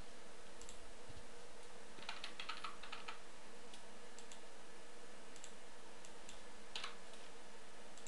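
Computer keyboard typing: a quick run of keystrokes about two seconds in, with scattered single key and mouse clicks before and after, and one sharper click near the end. A faint steady hum sits underneath.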